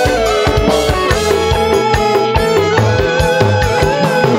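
Dangdut koplo band playing live through a large PA: steady drum hits and bass under a sustained, wavering melody line.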